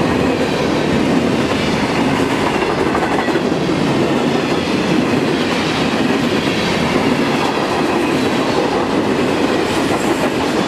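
Covered grain hopper cars of a freight train rolling past close by: a steady, loud rumble and clatter of steel wheels on the rails.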